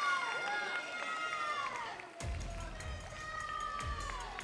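Arena crowd cheering and whooping over music played in the arena, celebrating the announced winner. About two seconds in the sound turns closer and boomier, with a few low thumps.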